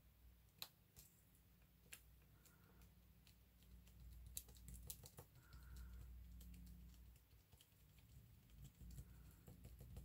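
Near silence with faint, scattered light taps and clicks of paper and card pieces being handled and set down on a tabletop.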